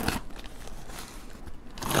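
Faint rustling and scratching of a paper packing slip against a cardboard box.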